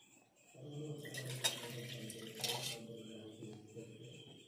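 A glass and a steel mug with a spoon in it being handled on a table: two short bouts of clattering with one sharp clink about a second and a half in.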